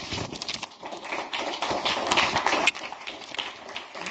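Audience applauding: dense, rapid clapping from a small crowd in a lecture hall, which drops off sharply and thins out about two-thirds of the way through.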